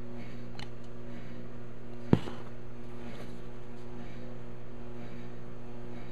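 A steady electrical hum, with one sharp knock about two seconds in and a fainter click earlier on.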